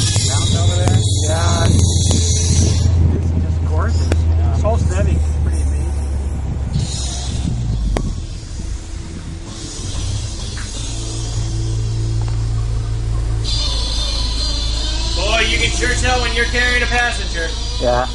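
Honda S2000's four-cylinder engine running at low speed, heard from inside the open cockpit as a steady low drone that eases off about eight seconds in, with music and voices over it.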